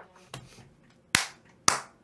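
Three sharp hand claps about half a second apart: the first faint, the next two loud.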